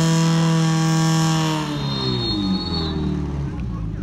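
Portable fire pump engine running at full speed with water jets hissing, then its pitch falls and it winds down about halfway through as the run ends. A thin high steady tone sounds for about a second near the middle.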